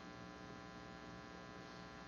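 Faint, steady electrical hum with no other sound: mains hum in the recording's background.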